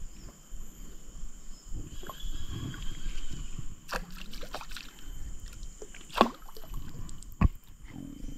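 Water lapping and sloshing around a small boat's hull, broken by a few sharp knocks and clicks from handling the rod and boat; the loudest knock comes about six seconds in.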